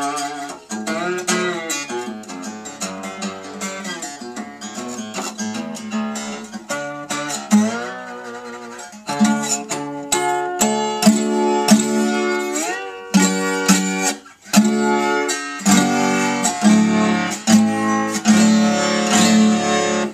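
Weissenborn Style 1 hollow-neck acoustic Hawaiian lap steel guitar played with a steel slide bar: picked notes and chords, with the bar gliding up between pitches several times. The playing grows fuller and louder about halfway through.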